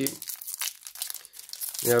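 Foil wrapper of a Panini Donruss Elite trading-card pack crinkling and tearing as it is pulled open by hand, a run of irregular fine crackles.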